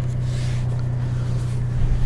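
Truck engine idling, a steady low hum heard from inside the cab.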